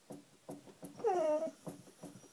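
A springer spaniel gives one short, falling whine about a second in, over a soft, even pulse of about three beats a second. She is stuck behind a television.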